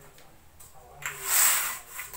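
A cotton garment shaken out by hand makes a loud rustling whoosh of fabric about a second in, lasting under a second and falling away quickly.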